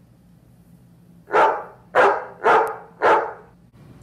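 A dog barking four times, starting about a second in, the barks roughly half a second apart.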